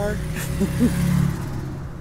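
Car engine rumbling and fading away, with the tail of a spoken sentence at the start and a brief vocal sound a moment later.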